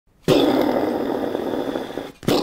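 A man making a loud, rough, drawn-out noise with his mouth and breath. It starts suddenly about a quarter second in and holds on without a clear pitch.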